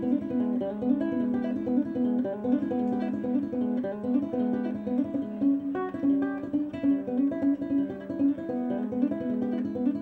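Small-bodied acoustic guitar played solo in a fast blues, a quick, busy run of plucked notes over a steady low note.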